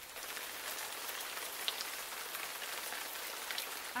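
Steady rain-like hiss with a few faint scattered ticks, laid over the logo intro; it starts and stops abruptly.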